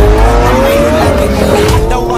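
A car sound over a music track with a heavy bass beat: a high note climbs in pitch, breaks off about a second in, and carries on a little lower.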